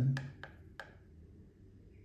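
Three light ticks of a metal spoon against a bowl as sugar is scooped up.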